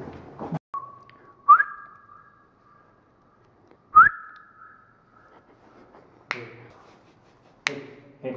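Loud whistling that echoes through a large salt mine cavern: a held note, then two sharp whistles that rise in pitch, about two and a half seconds apart, each ringing on as it fades. A few sharp snaps or clicks come near the end.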